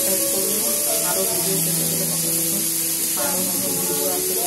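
A woman talking in Bengali over background music, with a steady high hiss.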